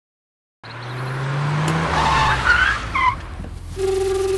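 A car engine fades in about half a second in, its pitch climbing and then dropping, with short tyre squeals as the car brakes to a stop.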